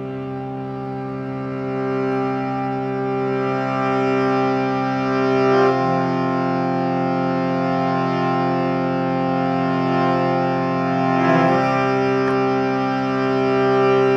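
Harmonium holding a sustained chord as a drone, giving the pitch for a chant; the chord changes twice, about a third and two-thirds of the way through.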